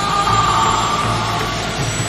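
Jet engine in a wind-tunnel test chamber running at full power: a loud, steady rushing roar with a high whine over it, cutting in suddenly.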